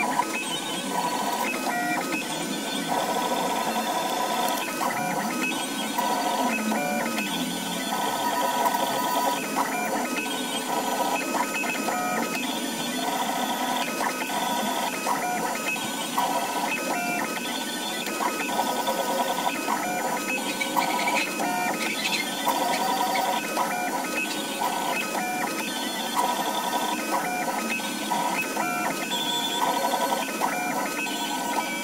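Large-format DIY 3D printer working: its NEMA 23 stepper motors whine in short runs of a second or two, each at a different pitch as the print head changes direction and speed. A steady high tone runs underneath.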